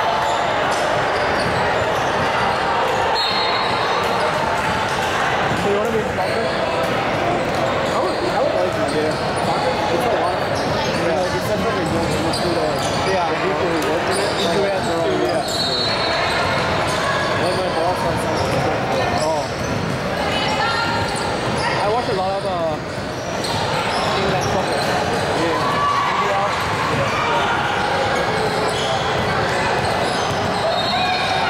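Basketball game sounds in a large gym: a ball bouncing on the hardwood court during play, under a steady mix of distant players' and onlookers' voices.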